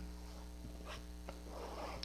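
Faint, steady low electrical hum picked up by a headset microphone, with a few soft clicks and a quiet breath near the end.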